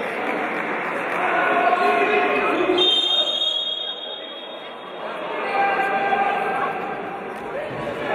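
Handball referee's whistle: one shrill, steady blast lasting just under a second, about three seconds in. Voices and chatter echo around the sports hall.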